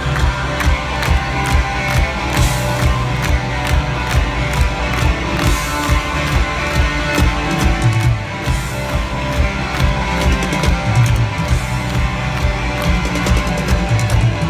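Rock band playing live at full volume: electric guitars and a driving drum kit in a stretch without singing, heard from within a stadium crowd.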